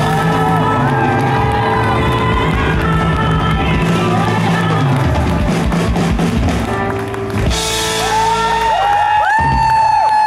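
Live band playing the closing bars of a song, with acoustic guitar, electric guitar and drums. A cymbal crash comes about seven and a half seconds in, then a final held chord as the crowd starts to cheer near the end.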